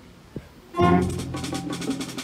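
A school concert band comes in together about three quarters of a second in on a loud held chord, with heavy low brass and repeated drum strokes.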